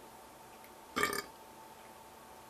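One short throat sound, about a second in, from a man drinking bottled tea.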